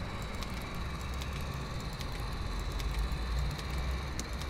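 Low, steady mechanical rumble with a faint high whine above it, growing a little louder near the end: a small tracked security robot rolling along on its treads.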